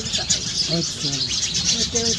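A chorus of small birds chirping continuously, with brief snatches of a person's voice under it.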